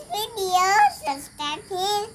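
A young girl's voice, talking in a high sing-song lilt in a few short phrases.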